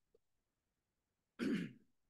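A person clearing their throat once, a short, sharp burst about one and a half seconds in.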